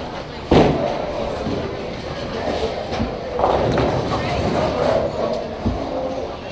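Busy bowling alley: background voices over the rumble of balls and pins. A sharp impact about half a second in is the loudest sound, with more clatter a few seconds later and a short thud near the end.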